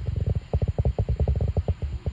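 A horse blowing a rolling snort, its nostrils fluttering in a rapid run of low pulses, about ten a second, that stops just after two seconds.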